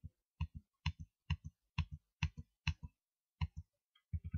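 Seven press-and-release clicks of a computer key, one about every half second, each a quick double click, as the spreadsheet is paged down.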